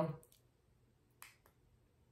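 A woman's last spoken word trailing off, then a quiet room broken by a few faint, short clicks: one just after the word and two close together about a second in.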